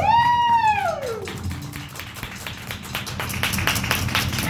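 Electric guitar through a stage amplifier: one note swoops up and back down over about a second, then a run of rapid sharp scratchy clicks.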